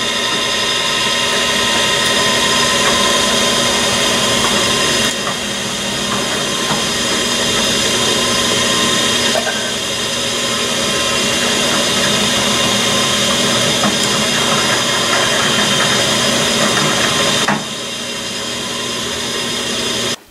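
Drill press running steadily with a 3/16-inch reamer in an aluminium casting, a constant hum with a high whine over it. The level dips slightly a few times.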